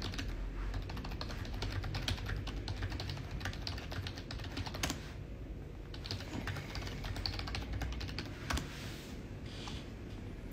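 Typing on a computer keyboard: quick runs of key clicks, with a short pause about five seconds in and fewer clicks near the end.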